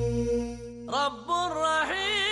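Vocal chant as closing music: a held sung note fades out, then about a second in a voice starts a new phrase with an ornamented, wavering melody.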